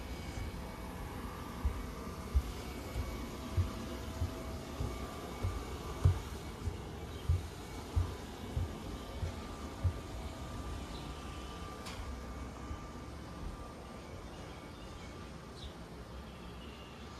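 Footsteps on a wooden deck at an even walking pace, about one and a half steps a second, stopping about ten seconds in, over a faint steady hum.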